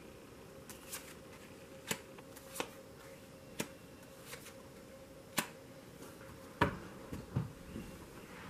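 Tarot cards being drawn from the deck and laid on a cloth-covered table: a string of sharp card snaps and clicks, about one a second, with a few soft thumps near the end.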